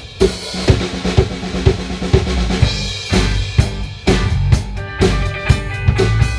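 Live rock band: a drum kit keeps a steady beat of bass and snare hits, about two a second, and the bass and electric guitars come in about three seconds in.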